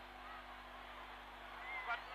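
Stadium crowd noise: a steady din of many voices at a distance, with a few faint calls rising out of it.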